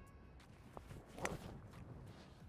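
A golf club strikes the ball once, about a second and a quarter in, with a short, sharp click. The shot is topped.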